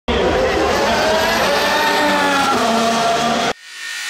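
Formula 1 car's turbocharged V6 hybrid engine running at high revs on track, a loud dense engine note whose pitch drifts slowly down. It cuts off abruptly about three and a half seconds in, and a quieter rising whoosh follows.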